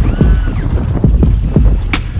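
A skiff's outboard motor running at low speed, with wind buffeting the microphone in low, irregular thumps.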